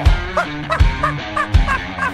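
A music clip with a steady beat under held bass notes and a short melodic figure that repeats about every half second.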